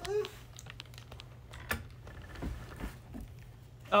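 Scattered light clicks and taps, about four over a few seconds, over a faint steady hum, with a brief pitched sound at the very start.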